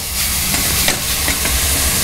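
Chopped vegetables sizzling in olive oil in a stainless steel sauté pan on a gas burner as they start to brown for a sofrito, a steady bright hiss over a low rumble.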